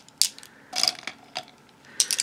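Makeup brushes and their clear plastic packaging being handled: three short bursts of clicking and rustling, roughly half a second apart.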